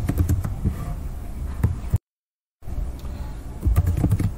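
Computer keyboard typing: scattered keystroke clicks over a low steady hum, with the sound cutting out to dead silence for about half a second midway.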